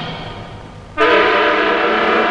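Orchestral film-score music. A held chord dies away, then a new loud sustained chord enters sharply about a second in.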